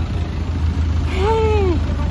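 Tour boat's engine running steadily with a low drone, heard on board. About a second in, a voice gives one rising-and-falling vocal sound over it.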